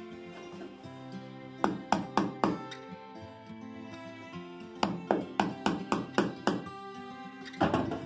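Sharp strikes on a wood chisel chipping out the wooden bungs over the screws in a wooden boat's planking: four quick blows about a second and a half in, a run of about eight in the middle, and two more near the end. Acoustic guitar music plays underneath.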